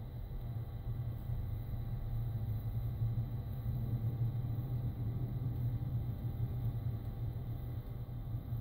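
Truck engine running steadily at low speed, heard from inside the cab as a constant low rumble with a faint hum above it.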